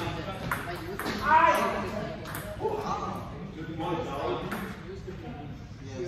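Table tennis ball clicking off paddles and the table in a short exchange, with a loud voice call about a second in and voices through the rest, echoing in a large hall.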